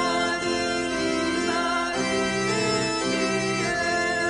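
Congregational hymn: a choir singing over sustained organ-style keyboard chords, the chord changing about two seconds in.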